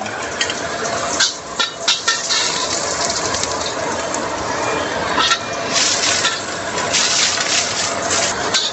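Sliced ginger frying in hot oil in a wok: a steady sizzle with irregular crackles and pops. Near the end a metal spatula is stirring in the wok.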